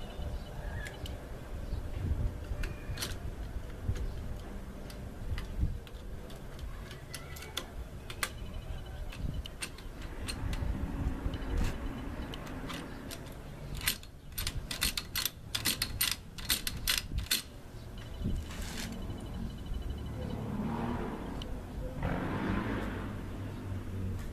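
Metal clicks and clatter from a shotgun being handled and worked during cleaning, with a quick run of about a dozen sharp clicks a little past the middle.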